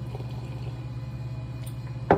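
A person drinking from a glass, the faint sounds of the drink over a steady low hum in the room.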